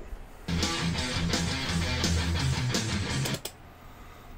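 Guitar backing track playing from an iPad through the Pod Go's headphone output into an IK Multimedia iLoud speaker. It starts about half a second in and cuts off suddenly near the end as the headphone output cable is pulled, showing that the monitor mix leaves only through the phones port.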